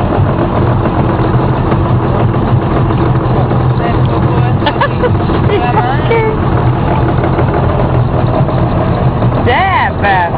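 Steady drone of a motor vehicle's engine and road noise, with a strong low hum.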